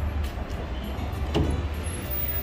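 A low, steady rumble of outdoor noise, with one brief short sound about one and a half seconds in.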